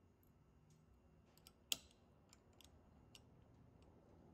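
Faint small metal clicks as a thin steel valve plate is set down onto the spring-loaded guard of a Gardner Denver air compressor valve, with one sharper click a little under two seconds in.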